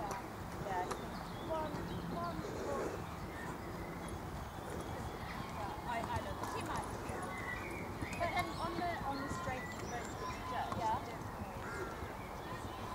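Hoofbeats of a horse trotting on a sand arena surface, muffled and steady, with faint voices behind.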